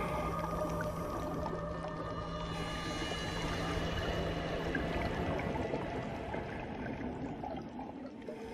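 Muffled underwater rushing noise during a scuba descent, with a few steady held tones beneath it; the lowest tone stops about five seconds in.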